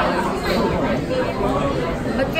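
Restaurant chatter: several people talking at once over a steady hubbub.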